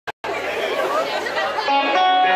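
Crowd chatter in a large hall, many overlapping voices, after a short click at the very start. Near the end the band's first sustained notes come in.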